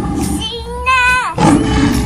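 A lion roaring in two loud bursts, one at the start and one about one and a half seconds in, with a high voice rising and then dropping in pitch between them.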